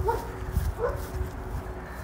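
Two short yelping calls from an animal, about three-quarters of a second apart, over a low rumble.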